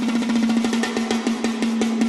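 Live band's drum kit playing a rapid snare roll over a steady held low note, at the start of a song.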